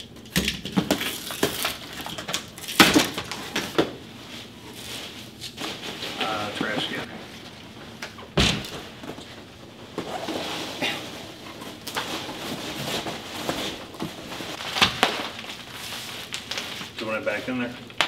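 Cardboard shipping box being cut open and handled: scraping and rustling of cardboard and packing material, with several sharp knocks and thumps, the loudest about three seconds in.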